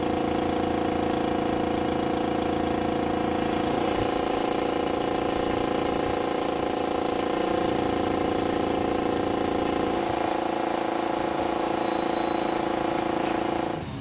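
A motor running steadily with a constant hum, its pitch shifting slightly about four seconds in and again about ten seconds in.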